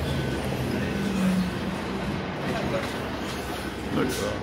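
City transit bus in motion, heard from inside the passenger cabin: a steady drone of engine and road noise with a low hum that grows briefly louder about a second in.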